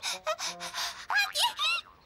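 A young girl's cartoon voice coughing and gasping several times in short bursts, choking on exhaust fumes.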